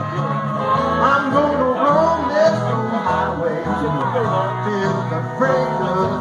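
Live band playing a country-blues number through PA speakers, with guitar.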